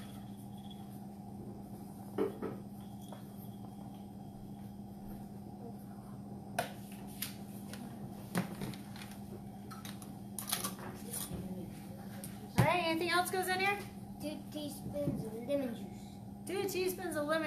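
Steady low room hum with a few light knocks and clinks from utensils being handled. About three-quarters of the way through, a person's voice speaks briefly and loudly, with a few softer words near the end.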